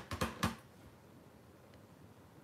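A clear acrylic stamp block tapped a few times in quick succession onto a foam ink pad, quick dull clicks in the first half second, then quiet as the stamp is pressed onto cardstock.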